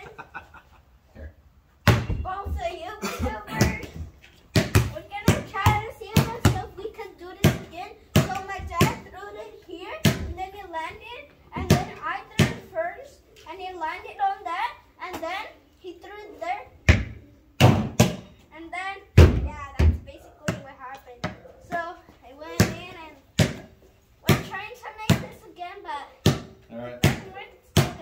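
Basketball bouncing on a concrete patio: many sharp thuds at irregular intervals, under near-constant talking.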